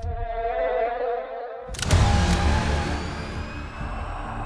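Horror-trailer sound design: a wavering, insect-like buzzing drone. About two seconds in, a sudden loud hit cuts in, followed by thin tones that rise slowly in pitch.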